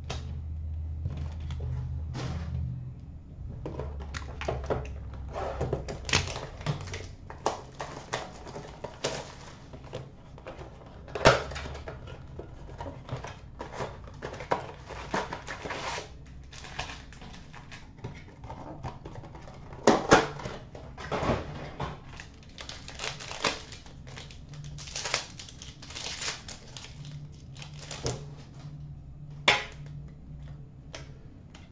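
Trading cards and their pack wrappers handled at a counter: irregular taps, light knocks and crinkles as cards are shuffled, set down and wrappers torn, with a couple of sharper clicks.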